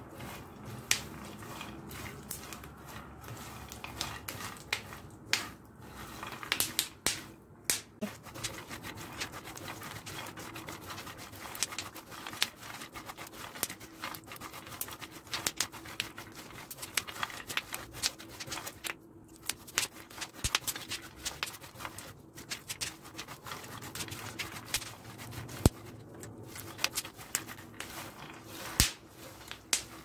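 Chopped nuts and pumpkin seeds crackling and clicking as they dry-roast in a hot frying pan, stirred and scraped around the pan with a spatula. The crackling is the sign that the nuts have begun to toast.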